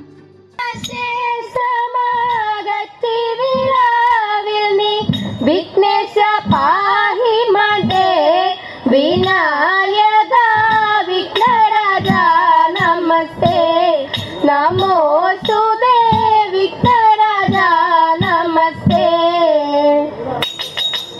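A high, young female voice singing a Malayalam Thiruvathira-style song with ornate, sliding melodic turns, over a steady low beat of about two strokes a second.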